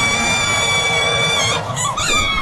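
A long, high-pitched scream held at one steady pitch, breaking off about one and a half seconds in, over a noisy background.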